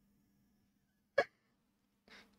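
A single short vocal sound, hiccup-like, about a second in, over a faint steady low hum.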